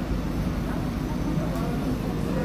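Indistinct background chatter of several people over a steady low rumble of room noise.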